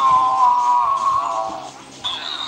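A child's voice holding one long high note, wavering slightly and dipping a little before it fades near the end.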